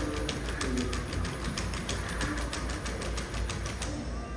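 Unitree Go1 robot dog walking, its feet and leg joints making a rapid, even ticking of about six or seven clicks a second.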